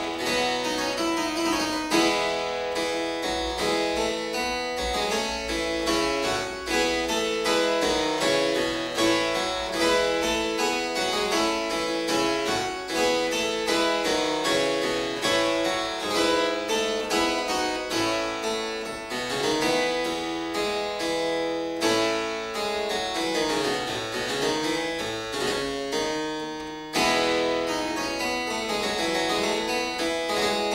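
Solo harpsichord playing a steady stream of quick plucked notes, with runs that fall and rise. It has one short break near the end before the playing picks up again.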